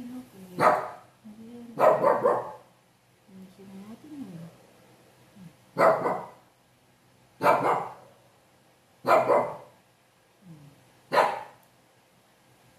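A small puppy barking: six short, sharp yaps spaced a second or two apart, with quieter low sounds between them.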